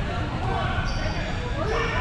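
Players' voices carrying across a large gym hall, with a ball bouncing on the hardwood court.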